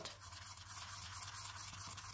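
Faint, dry scratching of a Posca paint marker's nib rubbed back and forth over corrugated cardboard while colouring in a small patch.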